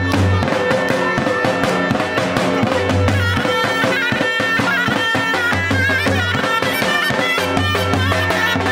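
Live folk dance music: a clarinet plays a reedy, ornamented melody over a fast drum beat, with recurring deep bass notes.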